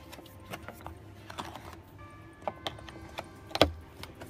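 Scattered light clicks and knocks of plastic dashboard trim panels being handled and unclipped in a truck cab, with one sharper, louder click near the end.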